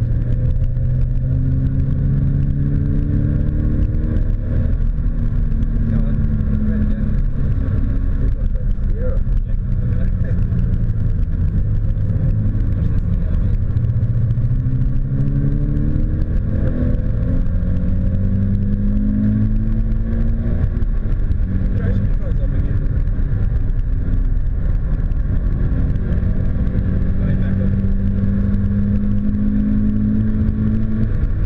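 Toyota 86's 2.0-litre flat-four engine heard from inside the cabin under hard track driving. The engine note climbs in pitch and drops back several times as the car accelerates and changes gear, over a steady bed of road and tyre noise.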